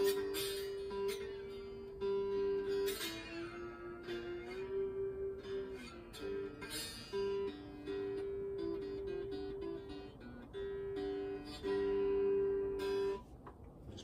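Three-string blues bowl in open G-D-G tuning, played unplugged with a slide: strummed chords over a ringing high drone note, with the pitch sliding up and down between them. The playing stops about a second before the end.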